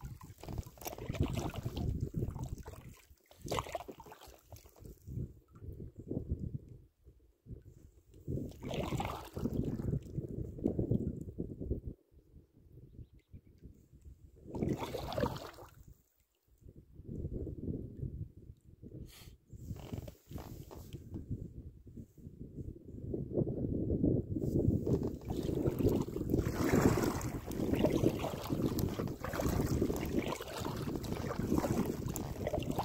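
Wind buffeting the microphone in irregular gusts that come and go every few seconds, heaviest near the end, with water sloshing around a packraft on a river.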